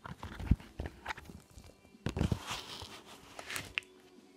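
Handling noise: rustling and a scatter of knocks and thumps as hands move stuffed puppets about and jostle the phone, with a heavier cluster of thumps about two seconds in and a sharp click near the end.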